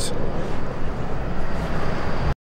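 Steady city street traffic noise: an even, low rumble with hiss.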